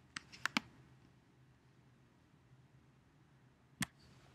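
Computer mouse clicks: a quick run of three or four clicks right at the start, then a single click near the end, over a faint steady hum.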